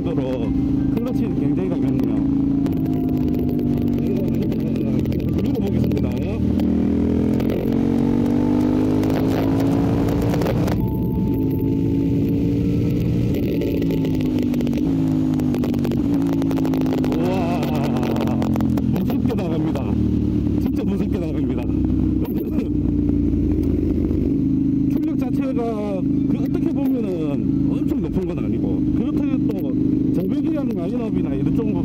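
KTM 890 Duke's 890 cc parallel-twin engine under way, its pitch climbing and falling back several times through the first twenty seconds as it accelerates and shifts, then holding fairly steady at cruising speed.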